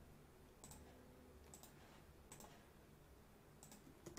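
Faint computer mouse clicks, about four spread over a few seconds, over near-silent room tone.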